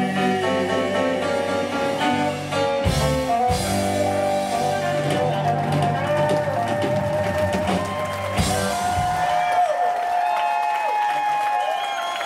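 Live band with electric guitars and drum kit playing a slow song's instrumental ending, with cymbal crashes about three seconds in and again near eight and a half seconds. The bass and drums drop out at about nine and a half seconds, leaving guitar notes ringing.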